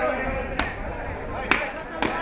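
Two sharp cracks about a second apart, coconuts being smashed on the ground, over the chatter of a large crowd.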